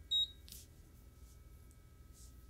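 A single short, high beep from the ProtoTRAK RMX CNC control as a key is pressed, then a faint steady electronic whine.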